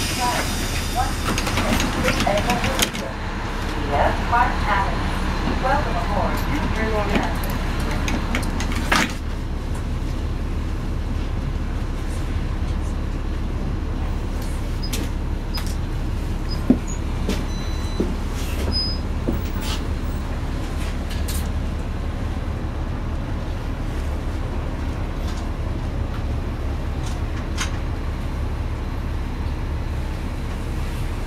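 Cabin of a NABI 40-foot diesel transit bus: a steady low engine rumble with light rattles and clicks. Voices are heard over it for the first nine seconds, ending with a short sharp sound, after which the engine rumble carries on alone.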